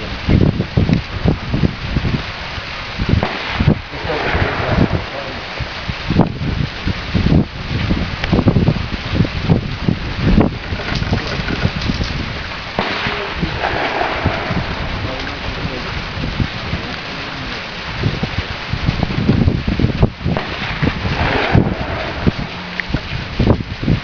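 Gusty wind buffeting the microphone: an uneven rushing noise with heavy low rumbles that swell and drop every second or so.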